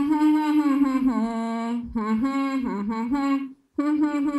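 A woman humming a tune with closed lips into a handheld microphone: three held phrases, broken by short breaks about two seconds in and just before the end.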